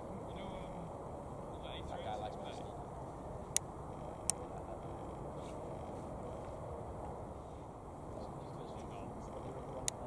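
Steady low rumble of a Boeing 787-9's Rolls-Royce Trent 1000 engines at taxi power. Faint voices and three sharp clicks are also heard.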